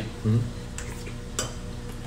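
Metal spoon clinking and scraping against a ceramic plate while eating, with two light clinks, the second sharper, in the middle of the stretch. A brief vocal sound comes just after the start, over a steady low hum.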